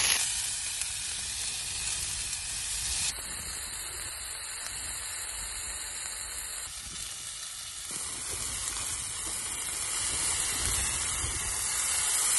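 Food sizzling in a pan over a Jetboil MicroMo gas stove: a steady frying hiss that drops abruptly in level about three seconds in and shifts again a few seconds later.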